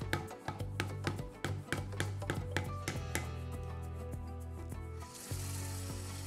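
Background music with a steady bass line, over a quick run of sharp taps, about four a second, as a mallet drives a pronged stitching chisel into leather to punch sewing holes; the taps thin out after about three seconds. About five seconds in, the hiss of a running kitchen tap starts as the leather is wetted.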